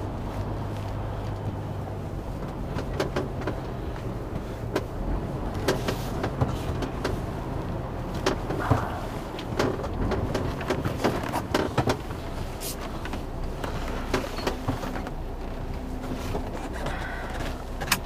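Heavy goods lorry's diesel engine running at low speed, heard from inside the cab, with frequent short clicks and knocks from the cab scattered through it.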